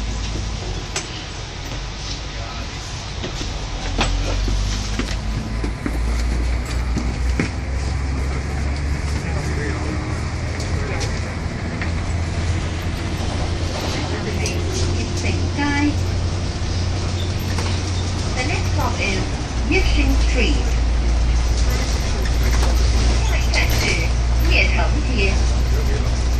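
Double-decker bus in motion, heard from the upper deck: a steady low engine and road rumble through the cabin that grows louder for the last few seconds.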